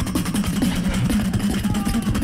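Live beatboxing amplified through a PA: a fast, unbroken stream of percussive clicks and snaps over a sustained low bass tone.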